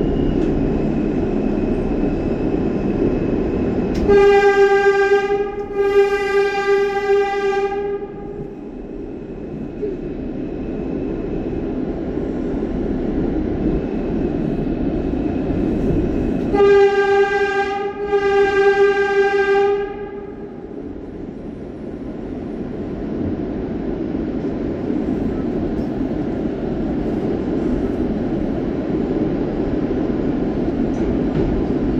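An R160 subway car running through a tunnel, heard from inside the car as a steady rumble. A subway train horn sounds twice, about 4 and 17 seconds in, each time as a short blast followed by a longer one.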